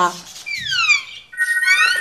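Cartoon bird's whistled sound effects: long falling glides like a disappointed sigh, then short rising chirps over a steady high two-note whistle.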